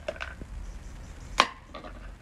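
A few short, sharp clicks and knocks of plastic toys being handled in a small plastic bucket, the loudest about one and a half seconds in.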